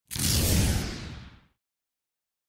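Whoosh sound effect with a deep low rumble under the hiss, for an animated logo transition; it comes in sharply, lasts about a second and a half and fades out, the hiss dying away before the rumble.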